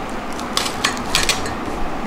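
Glass mugs of tea and a plate clinking and knocking as they are set down on a glass-topped table: a handful of short, sharp clinks about half a second to a second and a half in.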